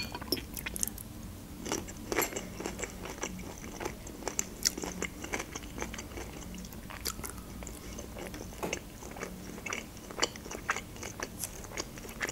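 Close-miked chewing and biting of fried pelmeni (pan-fried dumplings), with many irregular short mouth clicks.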